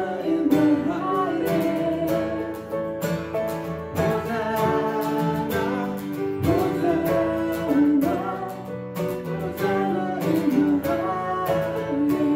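A live worship song: a woman singing over strummed acoustic guitar and grand piano chords.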